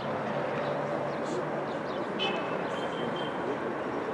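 Outdoor ambience: a steady hiss with a faint murmur of distant voices and a few short high-pitched notes around the middle.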